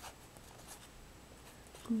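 Fountain pen nib scratching faintly across card in a few short strokes as a word is written.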